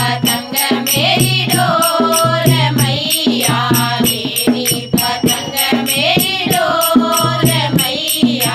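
Women's voices singing a Hindi nirgun bhajan together, over a hand-played dholak drum and a steady rhythmic beat of sharp percussive strokes.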